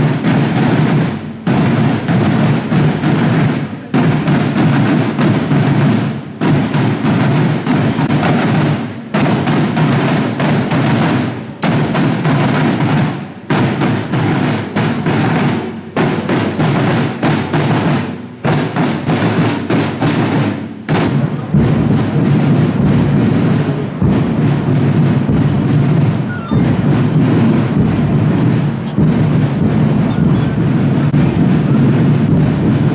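Marching drum corps playing snare and bass drums in a repeating cadence, broken by short pauses every two seconds or so, then playing on without breaks in the last third.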